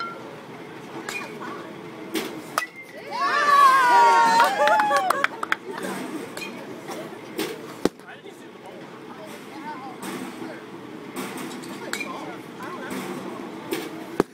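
Sharp knocks of balls in a batting cage, the strongest about eight seconds in. A loud high-pitched cry from a person, rising and falling in pitch, lasts about two seconds from three seconds in, over background voices.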